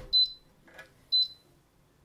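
Vevor two-mug sublimation heat press beeping twice, short high beeps about a second apart. It is signalling that it has reached its 180 °C set temperature.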